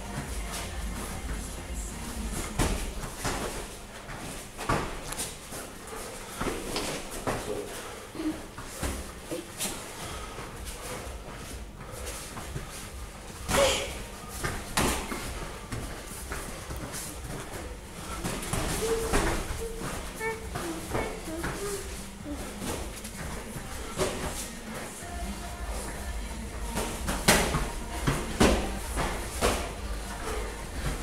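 Gloved punches and kicks landing in a light-contact kickboxing bout: scattered sharp impacts, the two loudest about fourteen seconds in and near the end.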